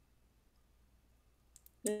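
Near silence on a video call, then two faint mouth clicks about a second and a half in, just before a woman starts to speak.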